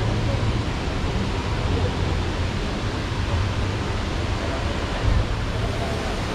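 Late-1960s Ford Mustang idling, heard at the exhaust tip as a steady low rumble under a constant hiss, with a brief swell about five seconds in.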